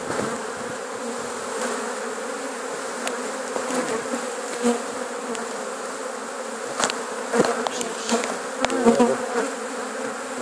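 A swarm of honeybees buzzing steadily, the dense hum of many bees together as they are shaken off a cloth into a cardboard box. A few sharp knocks and rustles come in over the hum near the end.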